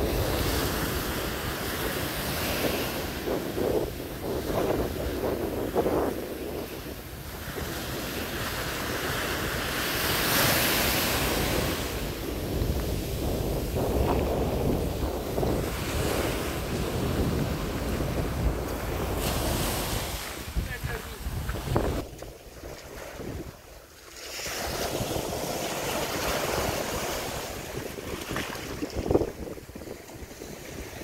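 Small sea waves breaking and washing up a sand-and-shingle beach, the surf swelling and easing as each wave runs in, with wind noise on the microphone. The surf dips briefly about three-quarters of the way through.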